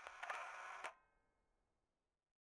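Short outro sound effect on the end card: a sudden bright burst with a couple of sharp clicks, then a ringing tone that fades out within about a second.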